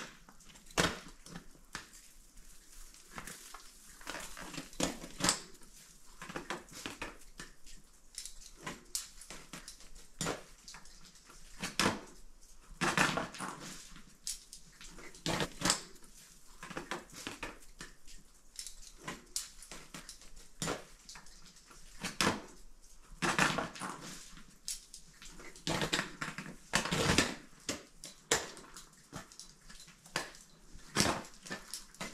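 Irregular crunching and scraping of boots and climbing gear on snow and rock during a rappel, with sharp clicks and knocks and a few longer scrapes.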